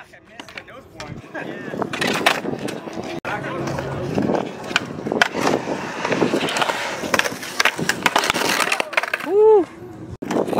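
Skateboard wheels rolling over concrete, with many sharp clacks and slaps of the board against the ground. Near the end comes a short rising-and-falling vocal cry.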